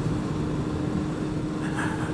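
Motorcycle engine running at a steady cruising speed, with a low haze of wind and road noise on a helmet-mounted microphone and a steady hum that holds one pitch.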